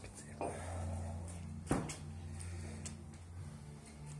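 A single sharp knock about halfway through, over a low steady hum.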